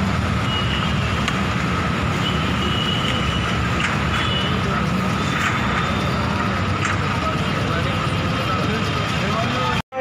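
Roadside street noise: a steady rumble of vehicle engines and traffic with voices of people talking, and short high beeps several times. It cuts off suddenly near the end.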